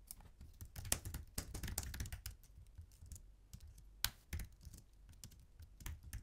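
Faint typing on a computer keyboard: a quick run of keystrokes over the first two seconds, then a few single key presses.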